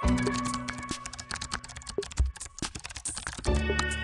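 Instrumental background music, with a rapid, irregular clicking laid over it for the first three and a half seconds or so while the low held tones thin out.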